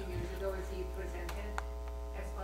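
Steady electrical mains hum in the microphone feed, with a buzzy stack of overtones, under a faint voice at the microphone. A couple of small clicks come a little past the middle.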